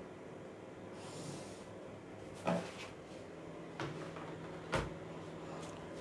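Quiet handling of pattern-drafting tools on paper: a faint pen scratch about a second in, then two light knocks from the ruler and pen on the table, the second a duller thump.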